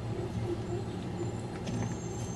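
A steady low background rumble, even throughout, with no distinct event.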